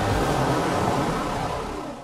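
Vehicle engine sound effect on the show's closing logo sting, a steady rushing rumble that fades out near the end.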